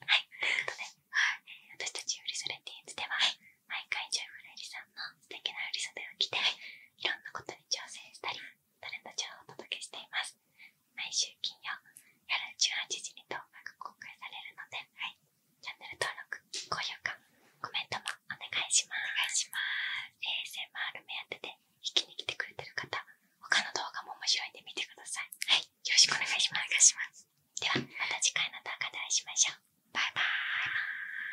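Soft whispered talking close into a binaural ear-shaped ASMR microphone, in short phrases with brief pauses.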